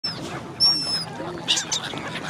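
A flock of black-headed gulls flapping and splashing on the water around a black swan. A high, thin whistled bird call comes about half a second in and is the loudest moment. A burst of splashing and wingbeats follows at about a second and a half.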